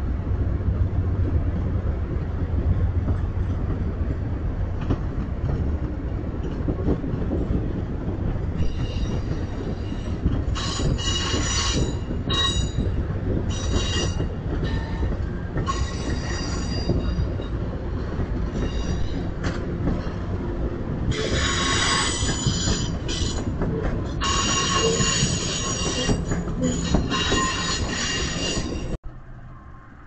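Amtrak California Zephyr passenger cars rolling past with a steady low rumble of wheels on rail. From about a third of the way in come repeated bursts of high-pitched metallic wheel squeal, each lasting one to three seconds. The sound cuts off abruptly just before the end.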